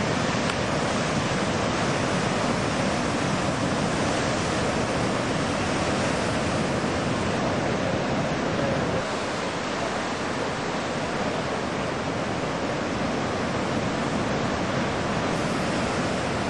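Ocean surf: waves breaking and washing up a beach, a steady rushing noise.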